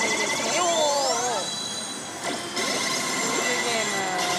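Electronic sound effects from a Daito Giken Hihouden pachislot machine: rising sweeps, gliding chirps and steady beeping tones as the reels stop and the machine awards a +20 game addition, over the din of other slot machines.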